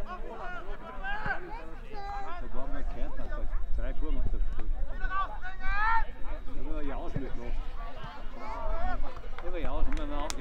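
Several voices calling and shouting across a football pitch during play, none of them close or clear enough to make out words, over a steady low rumble.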